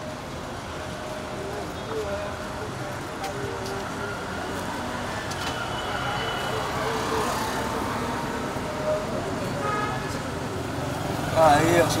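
Outdoor ambience of road traffic and several people talking at a distance, with one voice louder near the end.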